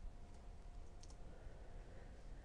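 A faint click about a second in, from the computer as a presentation slide is advanced, over quiet room tone with a low steady hum.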